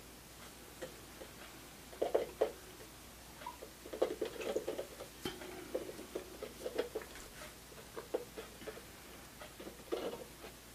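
Light, scattered clicks and crinkles from handling a clear plastic soda-bottle dome and squeezing a nearly empty tube of E6000 glue onto its rim. There is a small cluster about two seconds in and a busier run in the middle.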